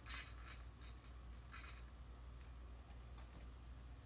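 Quiet room with a low steady hum and a few faint rustles and soft ticks, the kind of handling noise made when a hand-held camera is moved.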